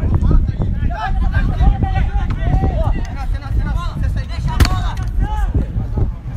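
Young football players shouting and calling to each other across the pitch over a steady low rumble, with one sharp knock about four and a half seconds in.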